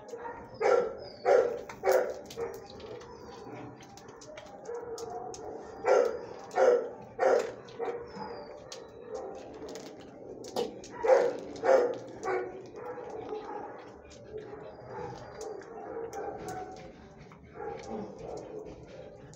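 A dog barking in three quick runs of three sharp barks each, near the start, in the middle and about two-thirds of the way through, over a steady background din of an animal shelter kennel.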